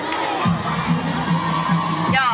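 A group of young cheerleaders shouting and cheering together, many voices at once.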